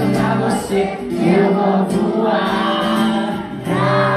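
Live pop-rock song on acoustic guitar, with many voices of the audience singing along in chorus.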